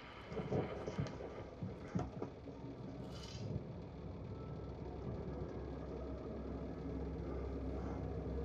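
Short-film soundtrack: a few knocks and movement sounds, a brief hiss about three seconds in, then a low rumble that swells steadily louder.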